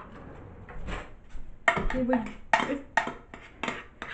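A spoon scraping and knocking against a baking dish as graham cracker crumbs soaked in melted butter are stirred. It is quiet for the first second and a half, then comes a run of sharp scrapes about every half second.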